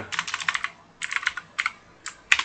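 Typing on a computer keyboard: a quick run of keystrokes, then two shorter runs after a brief pause, the last keys falling about one and a half seconds in.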